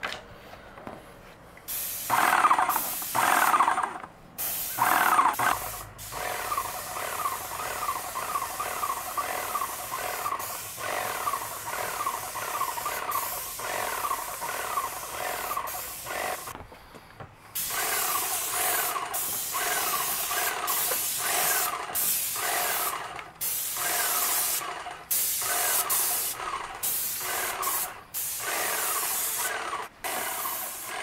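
Airless paint sprayer spraying deck paint in repeated trigger pulls: a hissing spray that cuts off and starts again many times. Under the hiss, a short falling chirp repeats about twice a second.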